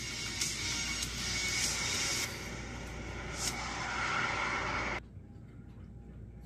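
Ad soundtrack music with a steady jet-like rushing noise, played back through a TV speaker and picked up off the screen; it cuts off suddenly about five seconds in, leaving quiet room noise.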